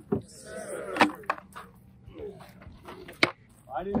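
Plywood panels of a doll-house fire training prop knocking together as they are handled: three sharp wooden knocks, just after the start, about a second in, and just past three seconds.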